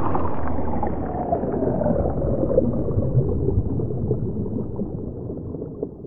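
Intro logo sound effect: a noisy whoosh whose pitch keeps sinking, settling into a rumbling, crackling body. It fades over the last second or so.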